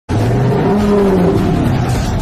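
Loud, dense battle din, with a low held tone that slides slightly downward in the middle.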